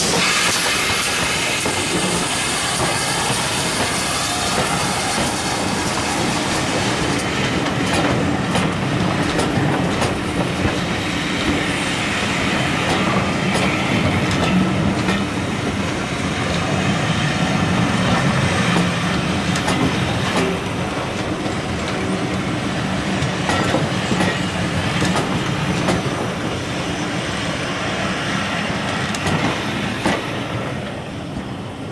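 GWR Manor class 4-6-0 steam locomotive passing close by with its train, steam hissing as the engine goes past. Then the coach wheels rumble and click over the rail joints, easing off near the end as the train draws away.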